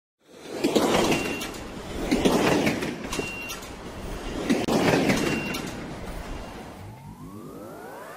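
Intro sound effects: three rushing whooshes, each followed by a brief high beep, then a rising synth sweep near the end.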